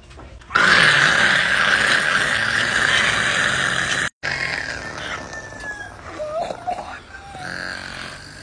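Harsh, raspy zombie growling, loud for about three and a half seconds and then cut off suddenly. Quieter growls and moans follow.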